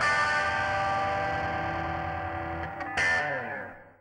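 Distorted electric guitar, a Squier Affinity Telecaster on its Seymour Duncan Hot Rails bridge pickup, letting a final chord ring and slowly decay. A last strike comes about three seconds in, then the sound dies away to nothing just before the end.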